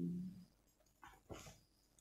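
A woman's unaccompanied sung note held at the end of a song, fading out about half a second in, followed by a couple of short breathy vocal sounds.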